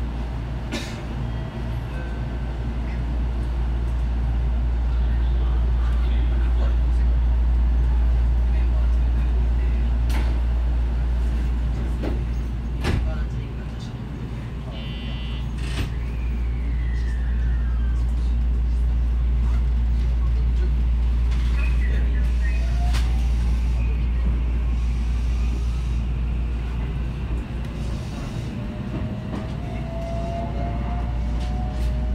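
JR West 223 series electric train running on the line: a steady low rumble of wheels on rail with a few sharp clicks from the track. Near the end a motor whine rises in pitch as the train picks up speed.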